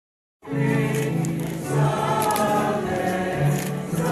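A choir singing a hymn in held, sustained notes; the recording begins about half a second in.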